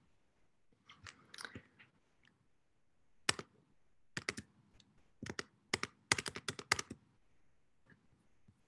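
Keys being pressed on a computer keyboard: a few faint clicks, then irregular clusters of sharp clicks from about three seconds in until near the end.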